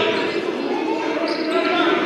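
Basketball bouncing on a hardwood gym floor during live play, with players' and spectators' voices in the hall.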